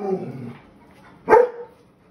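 A German shepherd puppy barking: one short, sharp bark about a second and a half in, after the fading end of an earlier bark at the start.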